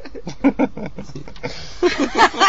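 A person's voice making a rapid run of short, unclear vocal sounds, about eight to ten a second, dying away about one and a half seconds in.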